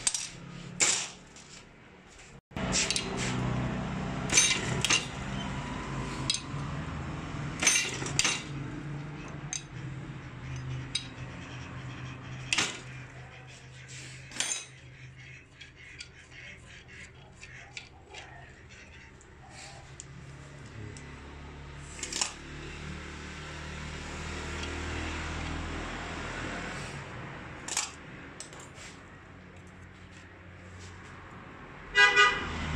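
Small steel diesel injection pump parts clinking against each other and against a steel parts bowl as they are picked out and fitted into the pump head. The clicks and taps are sharp and come at uneven intervals, with a steady low hum under them.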